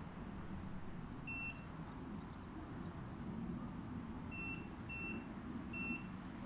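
Short high electronic beeps from a Xiaomi Roidmi Mojietu portable tyre inflator: one about a second in, then three in quick succession near the end.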